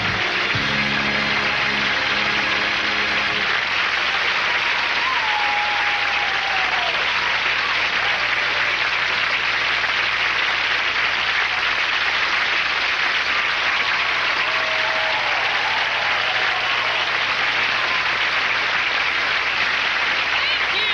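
Large studio audience applauding steadily, with a few cheers rising over the clapping. Band music plays under the applause for the first few seconds, then stops.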